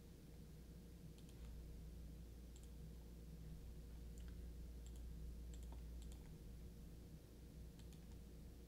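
Near silence with faint, scattered clicks from a computer mouse and keyboard over a low steady hum.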